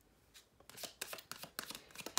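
A deck of tarot cards shuffled by hand: a rapid run of small card clicks and flicks starting a little under a second in.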